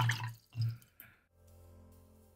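Watercolour brush swished in a water jar, a few short watery splashes in the first second. Then quiet background music fades in.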